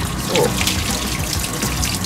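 Handheld shower head spraying water onto a dog's wet coat in a stainless steel grooming tub: a steady rush of running water.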